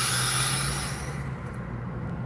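A person taking a slow, deep breath in close to the microphone: a hissing inhale that fades out a little over a second in, over a low steady hum.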